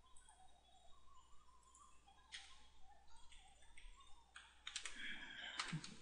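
Faint computer keyboard typing with a few mouse clicks: scattered single keystrokes, coming closer together in the second half.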